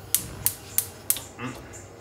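Electric spark igniter of a gas hob clicking as the burner is lit, about three sharp clicks a second; four clicks, then a short pause.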